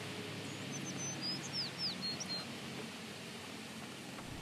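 A bird chirping faintly in a short run of quick high notes and downward-sliding whistles, about half a second to two and a half seconds in, over a steady outdoor hiss.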